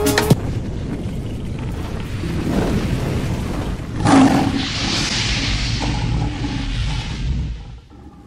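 Cinematic outro sound effects: a low rumble, a boom about four seconds in, then a swelling rushing hiss that fades out near the end.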